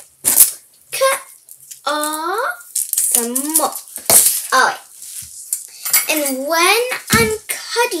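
A child's voice making drawn-out sounds that rise and fall in pitch, without clear words, with a few sharp clatters of craft things being handled on a table.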